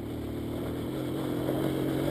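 Kazuma 125 mini quad's small single-cylinder engine running at a steady throttle, growing gradually louder as the quad comes closer.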